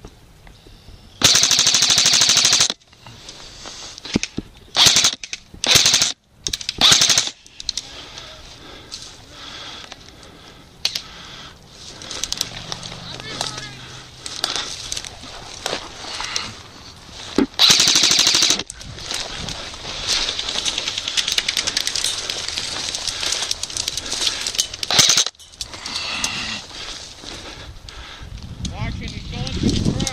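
Airsoft rifles firing rapid full-auto bursts of rattling shots. There is a loud burst of about a second and a half near the start, three short bursts a few seconds later, and another burst of about a second near the middle. A quieter, continuous rattle of fire runs for several seconds after that.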